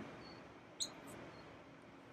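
Quiet outdoor background with a few faint, brief high bird chirps and one short high click a little under a second in.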